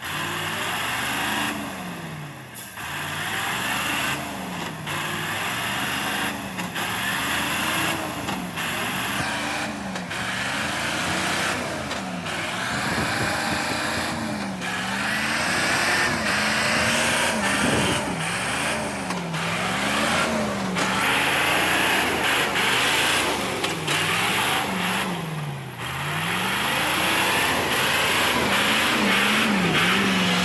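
Heavy logging truck's engine labouring through deep mud, its revs rising and falling over and over, about every two seconds.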